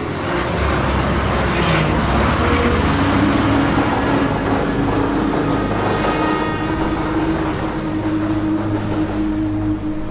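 A Tata minibus engine running as the bus pulls away: a loud, steady rush of engine and road noise, loudest in the first few seconds, with a steady low tone underneath.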